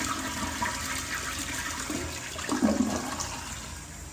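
Toilet flushing: a steady rush of water with gurgling surges, the loudest a little before three seconds in, then tailing off as the bowl empties.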